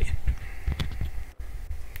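Handling noise picked up by a clip-on lavalier microphone as fingers reposition it on shirt fabric: low, irregular bumps and rubbing with a few faint clicks.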